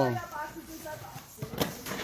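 Cardboard shipping carton being opened and handled: the flaps are pulled back and hands rub and press on the cardboard insert over a stack of vinyl records, with a couple of sharp knocks about a second and a half in.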